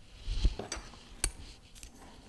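Handling noise from a paper seed packet and plastic milk jugs: a short rustle with a soft knock about half a second in, then a few sharp clicks.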